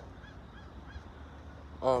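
Steady low outdoor background rumble, then a man's drawn-out "um" near the end.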